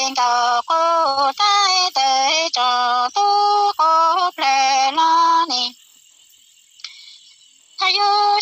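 A woman singing Hmong lug txaj, a traditional sung poem, as a single unaccompanied voice in held notes that step in pitch from syllable to syllable. The singing breaks off a little before six seconds in for a pause of about two seconds, then resumes near the end.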